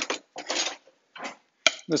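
Metal kitchen utensils handled: tongs taken from a utensil drawer and brought to a stainless steel mixing bowl, with two short rattles and then one sharp click shortly before speech resumes.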